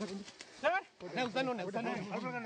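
People shouting in an untranscribed language, with a sharp rising yell a little under a second in.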